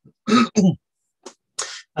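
A man clearing his throat twice in quick succession.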